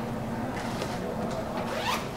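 Steady low background room noise, with a short rising swish near the end.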